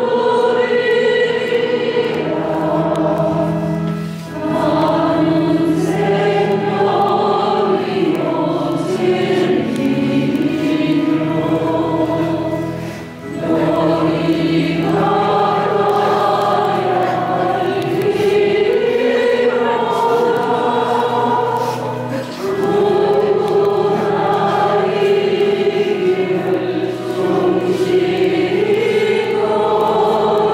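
Choir singing a slow hymn over steady held low notes, with three short breaks between phrases.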